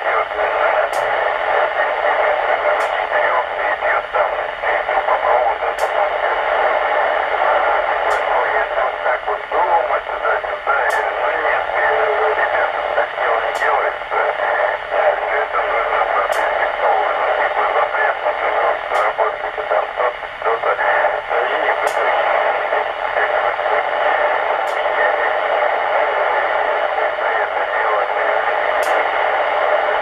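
Weak FM voice transmission from a 2-metre echolink station, heard through a Yaesu transceiver's speaker as narrow, band-limited radio audio mixed with hiss, its strength rising and falling as the signal fades.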